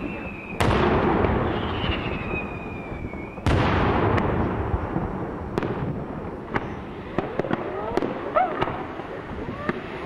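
Daytime fireworks display: two heavy aerial shell bursts about three seconds apart, each followed by a long rumbling decay, then a run of smaller, sharper cracks from further shells bursting.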